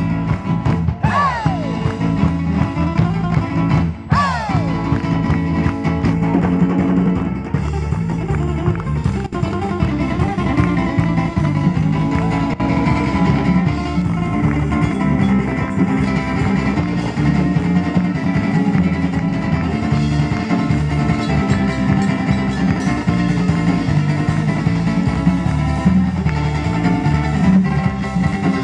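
A live band plays an instrumental passage: lead guitar over bass and drums, with a few bent notes from the guitar in the first four seconds.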